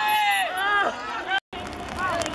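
Loud, high-pitched shouting voices, each call arching up and falling away. The sound cuts out abruptly for a moment about one and a half seconds in, and quieter background sound follows.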